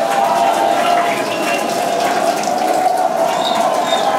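Steady rushing roar with a fine crackle from the Super Heavy booster's Raptor engines on the launch broadcast feed, with a sustained wavering hum running through it.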